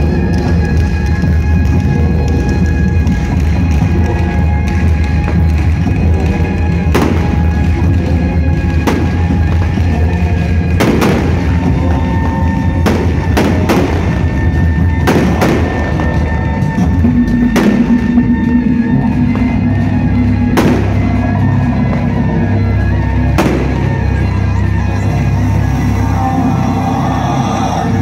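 Loud stage music with heavy, deep drumming from a troupe playing large Chinese barrel drums, with about eight sharp cracks at intervals of two to three seconds through the middle.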